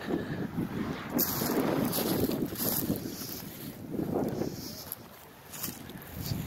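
Wind buffeting the microphone in uneven gusts, with the rustle of footsteps through dry grass.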